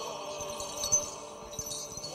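Small bells on an Orthodox censer jingling as it is swung in repeated strokes, with a sharper clink about a second in.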